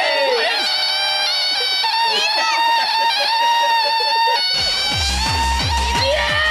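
Excited shouting and cheering voices, then background music with a steady thumping beat that comes in about four and a half seconds in.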